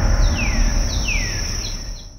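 Closing sound bed of a TV advertisement fading out: a low rumble dies away under a steady high tone, with three descending chirps about two-thirds of a second apart.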